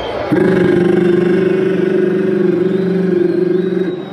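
A loud, steady held note through the concert sound system. It starts suddenly about a third of a second in, holds one pitch for about three and a half seconds, and cuts off just before the end.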